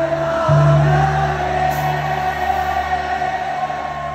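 Live band music: a long sustained sung note held over a steady low bass note that comes in about half a second in.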